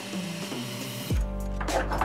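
Water from a kitchen faucet running into a glass measuring cup, over background music. About a second in, the water sound stops and a low steady hum begins.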